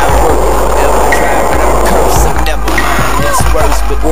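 Hip hop music track with heavy bass, over skateboard wheels rolling on concrete with occasional sharp clacks of the board.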